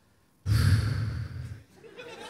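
A man's long sigh, breathed out close to a handheld microphone, starting about half a second in and fading after about a second.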